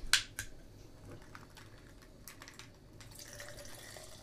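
Aluminium soda can cracked open with a short sharp snap just after the start, followed by faint fizzing and liquid trickling.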